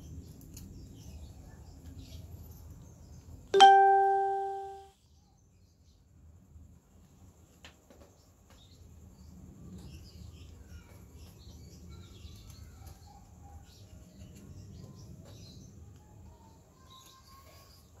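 A single bright chime-like ding about three and a half seconds in, fading over about a second before cutting off. Around it are faint handling sounds of fingers seating a flat flex cable in a TV circuit board's connector.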